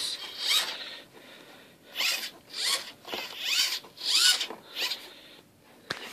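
The homemade hovercraft's two linked plywood rudders swung back and forth, giving about six short rasping strokes, each with a gliding pitch.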